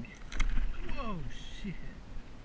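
A dull thump with water splashing against a kayak, about half a second in, under a man's excited "oh yeah".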